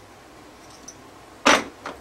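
Casino chips clicking together in a sharp clack about one and a half seconds in, with a smaller click just before the end.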